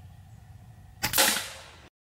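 A single shot from a .22 FX Impact M4 PCP air rifle about a second in: a sharp, quiet moderated report that fades over most of a second. The rifle is tuned to send the pellet at about 900 feet per second.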